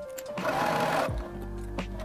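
A sewing machine runs in a short burst of under a second, stitching a long basting stitch around an apron pocket, over background music.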